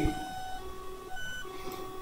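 Faint series of steady electronic tones, changing pitch every half second or so.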